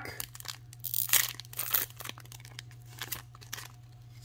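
A Digimon Card Game booster pack's foil wrapper being torn open and crinkled by hand, in a series of irregular crackling bursts.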